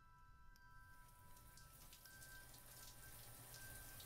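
Near silence, with a faint hiss of shower water spray fading in about a second in.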